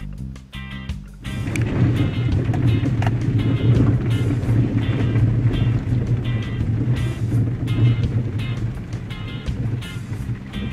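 Background music with a steady repeating beat. About a second in, it is joined by a loud, steady low rumble of a vehicle driving in the rain, heard from inside the cab.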